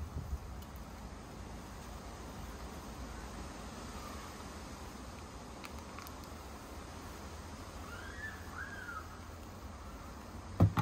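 Quiet outdoor background, a steady low hum and hiss, with a few faint knocks from the plastic fairing being handled and a faint rising-and-falling call about eight seconds in.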